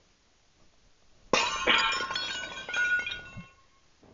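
Ceramic crock pot insert smashed in a single hit: a sudden crash about a second and a half in, followed by pieces clinking and scattering for about two seconds.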